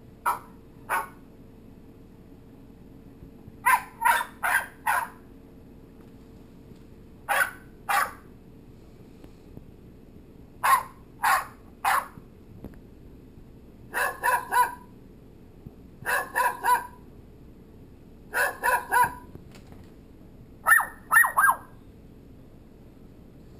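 Recorded dog barks played from a dog-noises app on a smartphone speaker: short barks in groups of two to four, a new group every two or three seconds, the last group quicker.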